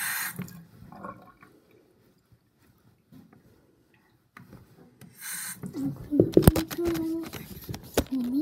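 Handling noise from a camera being grabbed and moved: a cluster of sharp knocks and rubbing near the end, with a brief vocal sound from a child among them. It follows a short hiss near the start and a quiet stretch in the middle.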